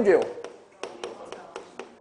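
Chalk tapping against a chalkboard while words are written: a quick series of short, sharp taps.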